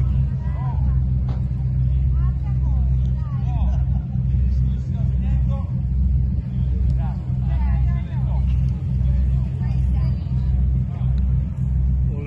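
Diesel engines of a motor yacht running as it moves slowly through the harbour: a loud, low, steady drone with a slow, even throb.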